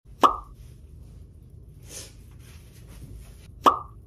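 Two short, identical pop sound effects, one just after the start and one near the end, each with a brief ringing tone, and a faint hiss between them.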